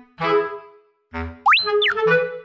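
Light, playful background music with clarinet-like notes, and a cartoon-style sound effect near the end: a whistle-like tone that slides quickly up, holds for a moment and slides back down.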